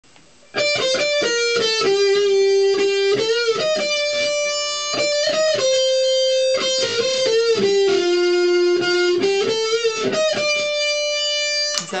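Electric guitar playing a melody line of single notes, some held long, starting suddenly about half a second in.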